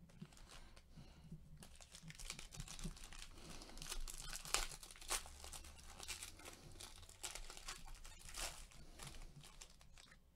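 Foil wrapper of a Panini Certified Racing trading-card pack being torn open and crinkled, a dense run of crackling that sets in about a second and a half in and runs until just before the end.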